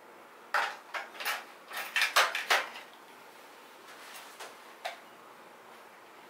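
Metal ear-cleaning tools clinking against each other and the tool tray as they are handled: a quick run of sharp clinks and knocks over about two seconds, then two lighter ones.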